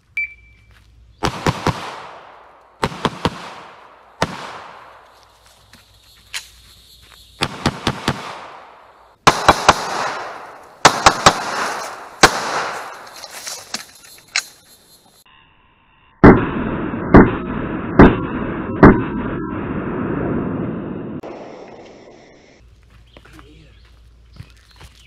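A shot timer's start beep, then a string of gunshots fired in quick pairs and triplets with pauses between, each shot ringing out and fading through the woods. Near the end come four louder, evenly spaced shots about a second apart, rounds sent through cover where the target is thought to be.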